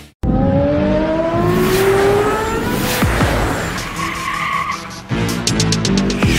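Trailer sound design over music: a whine like a revving car engine, rising in pitch for about two and a half seconds after a brief cut to silence. Music with a steady beat comes back about five seconds in.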